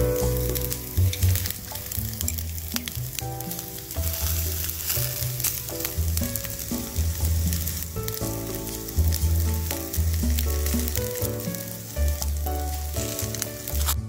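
Marinated chicken pieces sizzling on a wire grill over hot charcoal, a steady hiss of fat and sauce cooking. Background music with a bass line plays along.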